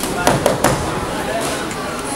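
Boxing gloves landing a quick flurry of three sharp punches in the first second, over voices in the gym.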